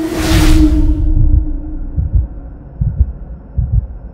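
Logo-animation sound design: a held tone fading out under a whoosh in the first second. Deep low thumps follow, several in pairs like a heartbeat.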